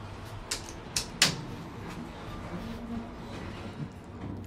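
Elevator's sliding doors closing on a KONE-modernized door operator: three sharp clicks in the first second and a half, the last the loudest, then a low, steady whir as the doors slide shut.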